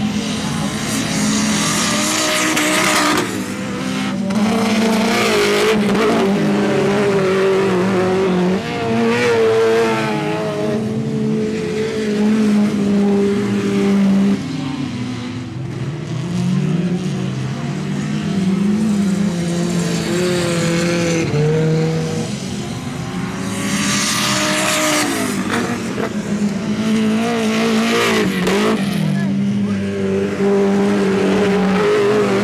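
Autocross cars racing on a dirt track, their engines repeatedly revving up and dropping back as they accelerate and brake around the circuit.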